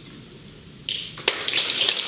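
Audience applause breaking out suddenly about a second in, after a quiet stretch: a dense patter of many hands clapping, with a few sharper claps standing out.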